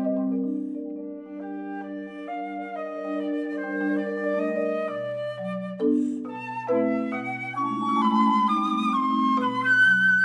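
Flute and marimba playing classical chamber music together. The flute plays a melody over held marimba chords, and the marimba moves down to lower chords about halfway through.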